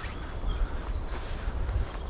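Wind rumbling on the microphone outdoors, with a few faint bird chirps in the background.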